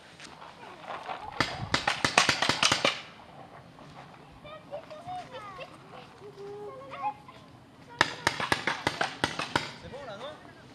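Paintball markers firing in two rapid bursts of about nine shots a second, the first about a second and a half in and the second about eight seconds in.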